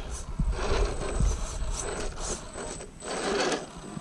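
Electric RC rock crawler's motor and geared drivetrain working under load, with uneven scrabbling and clicking as its tyres try to grip a slippery rock.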